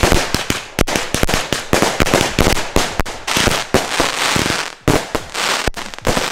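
Two consumer firework batteries (cakes) firing together: a rapid, irregular string of shots and aerial bangs with dense crackle between them.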